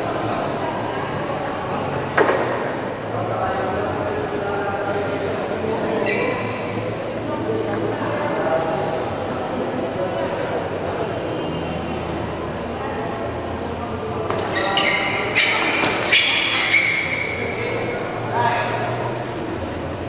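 A table tennis rally in a large hall: the celluloid ball clicking off the bats and table, amid voices around the court, with a louder outburst of voices about three-quarters of the way through.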